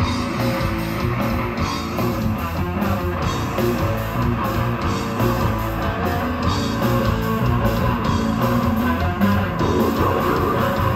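Live death-grindcore band playing loudly: distorted electric guitar riffing over bass and drums, with no break.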